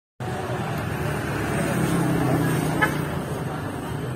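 Busy street ambience: motor traffic running steadily, with a low engine hum that swells briefly and people's voices mixed in. A short sharp sound stands out just before three seconds in.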